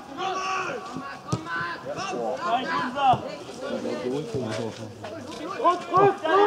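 Voices calling out and talking during a football match, with a couple of short sharp knocks.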